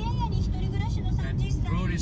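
Steady low rumble of road and engine noise inside a moving car's cabin, with a man's voice talking over it.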